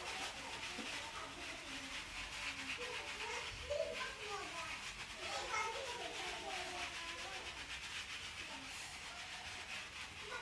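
Hair twist sponge being rubbed over short curly hair: a steady scratchy rustle throughout, with faint voices in the background.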